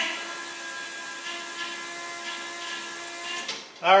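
Electric fuel pump of a fuel-injected engine running after the ignition is switched on, a steady high whine that builds fuel pressure, then stops about three and a half seconds in.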